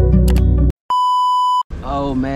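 Plucked-string intro music cuts off abruptly under a second in. After a short gap, a single steady electronic beep tone sounds for about three-quarters of a second, then a man starts talking.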